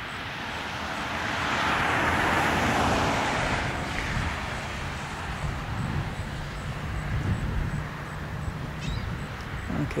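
A road vehicle passing on the highway: tyre and engine noise swells to a peak about two to three seconds in, then fades, over a steady low rumble of traffic.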